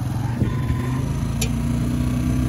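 Motorcycle engine running steadily while riding along, with one short high tick about a second and a half in.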